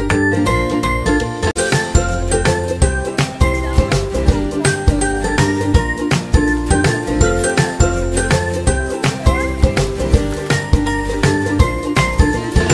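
Background music: a steady beat under a melody of short, high notes.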